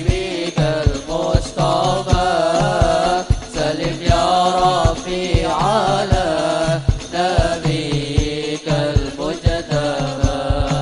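A solo voice singing an Islamic devotional song in a wavering, ornamented melody, accompanied by rebana frame drums beating frequent low strokes, played through the event's loudspeakers.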